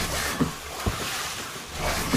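Rushing whoosh sound effect of sliding down an enclosed tube slide, swelling near the start and again near the end, with two soft low thuds in between.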